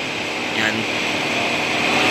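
Steady mechanical hum and hiss of running machinery in the background, with one short spoken word about half a second in.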